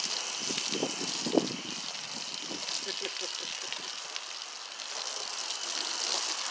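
Garden-hose foam gun spraying a thin, watery soap solution onto a car's body panels: a steady hiss of spray spattering on the paint. The ceramic wash-and-wax mix is producing little foam.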